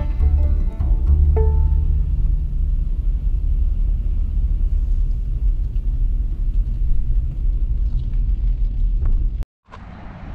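Steady low road rumble inside a car's cabin as it drives across a steel truss bridge, after a little background music fades in the first second or so; the rumble cuts off sharply near the end.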